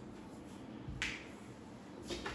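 A single short, sharp click about a second in, against otherwise quiet room tone.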